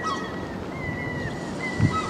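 Wind rushing over the microphone above open harbour water, a steady noisy rush, with a run of thin, high whistled chirps. A brief low thump near the end.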